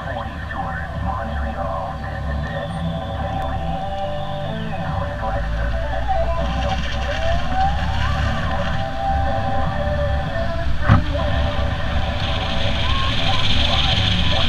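Inside a pickup truck's cab while driving: low engine and road rumble that grows louder about five seconds in as the truck gets moving. Faint talk runs over it.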